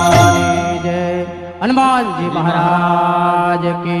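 Devotional bhajan chanting: a male voice over a steady held drone, with one sliding vocal phrase about halfway through and no percussion.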